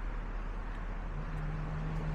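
Steady outdoor town ambience with a low traffic rumble. A low steady hum comes in a little past halfway.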